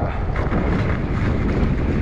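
Steady wind noise buffeting the microphone of a moving e-bike, with the low rumble of fat tyres rolling over wet, slushy pavement.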